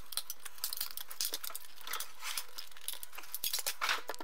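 Plastic laptop battery pack being pried and pulled apart by hand: a quick run of crackling, clicking and rustling as the case splits and the 18650 cells inside knock against it and each other, played back sped up.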